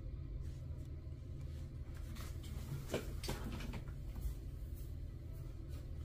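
Quiet handling of a trading card: a few faint clicks and taps around the middle as the card is moved and set down on a playmat, over a steady low hum.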